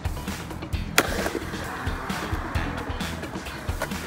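Skateboard on a concrete bowl: a sharp clack of the board about a second in, then wheels rolling on the concrete, under background music with a steady beat.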